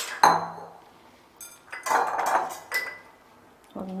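Utensils clinking and scraping against a pressure cooker pot: a sharp metallic clatter with a brief ring about a quarter second in, then a second spell of scraping and clinking about two seconds in.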